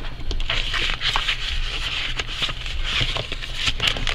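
Paper sticker sheets being handled and their pages turned, a rustling with small clicks and crackles, over a steady low hum.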